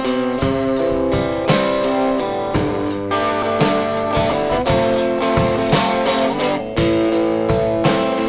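Electric guitar strumming chords through an amplifier in a 6/8 rhythm, each sharp strum followed by held notes.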